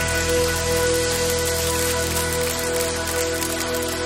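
A worship band holds its final chord, a steady sustained bass and keyboard sound, while the congregation applauds over it.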